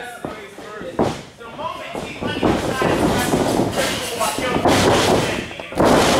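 Wrestlers' bodies hitting the wrestling ring's canvas: a thud about a second in, then a loud slam near the end as a leg drop lands on the mat.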